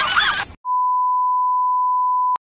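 Television colour-bar test tone: a single steady beep at one pitch that starts abruptly just over half a second in, after laughter and voices cut off suddenly.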